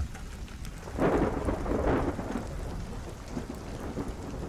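Steady rain falling, with a roll of thunder that swells about a second in and fades over the next second or so.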